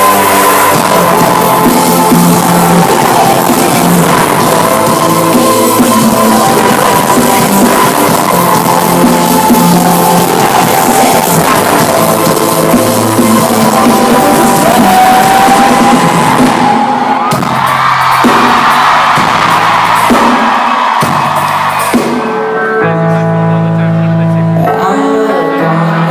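Loud live rock-band music in a theatre with the crowd screaming over it. About 17 seconds in the band drops back and the crowd's screaming takes over. Near the end steady held synth chords begin.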